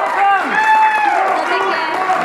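A group of people clapping along while a high voice holds long notes that slide down and level off.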